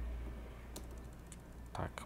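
Computer keyboard typing: a few separate keystrokes, with a low steady hum underneath.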